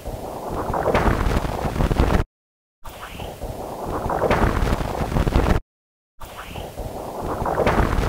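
Audified Wind spacecraft magnetometer data of solar wind, a noisy rushing sound played three times over with short gaps. Each pass builds in intensity, with a subtle whistle at its start and a percussive thud partway through: the shock front of a passing coronal mass ejection.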